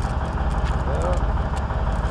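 Low, steady rumble of an idling diesel semi-truck engine, with a man's voice murmuring briefly in the middle.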